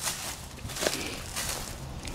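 A few footsteps on a concrete driveway, as short soft knocks over steady outdoor background noise.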